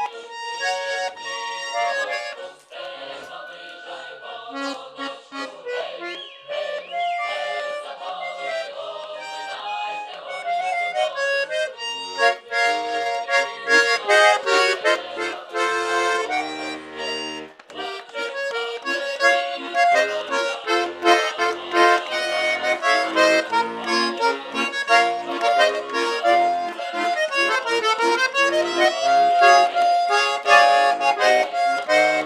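Button accordion played solo, a folk tune: quiet and unhurried for the first dozen seconds, then louder and livelier with a steady rhythmic chord accompaniment.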